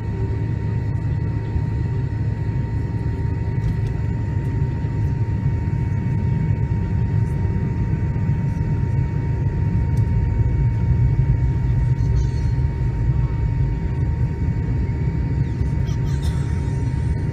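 MD-88's twin Pratt & Whitney JT8D engines at taxi power, heard inside the cabin: a loud, steady low rumble with a steady whine on top, swelling slightly a little after halfway.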